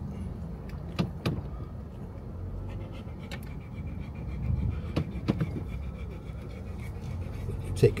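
Low, steady rumble of a car driving slowly, heard from inside the cabin, with a handful of sharp clicks and taps scattered through it.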